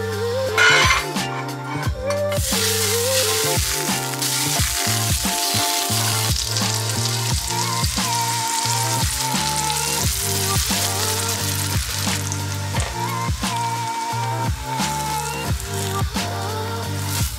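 Crepe batter sizzling in hot fat in a nonstick frying pan, the hiss starting a couple of seconds in, over steady background music with a beat.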